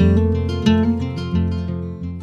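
Background music: acoustic guitar strumming chords, with a strum about every two-thirds of a second, fading out at the end.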